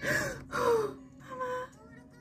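A woman's breathy, emotional laughter, muffled by her hand over her mouth: three short gasping breaths, the last one briefly voiced.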